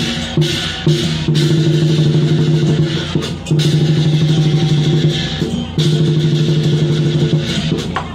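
Lion dance percussion: a large drum beaten in rapid rolls, three long rolls of about two seconds each with brief breaks, with cymbals clashing over it.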